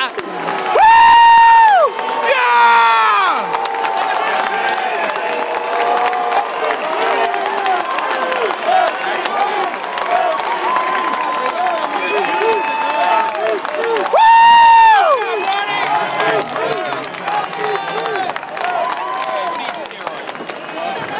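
Baseball crowd cheering a home run, with many voices shouting at once. Two loud, long, high-pitched shouts come close to the microphone, about a second in and again about fourteen seconds in, each falling away at the end.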